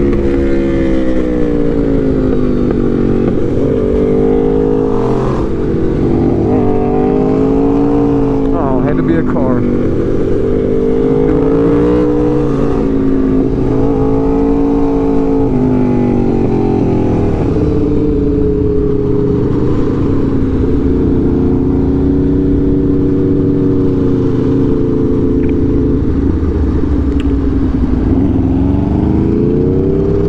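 Aprilia RSV4 Factory's V4 engine heard from on board, its note climbing and falling again and again as the rider opens and closes the throttle through a run of bends.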